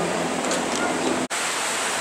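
Steady wind noise rushing over the microphone of a camera on a moving bicycle. The sound drops out for an instant just past halfway, then the same rush carries on.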